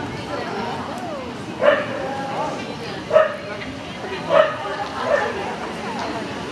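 A dog barking four times, short sharp barks about a second apart, over the murmur of voices in a large hall.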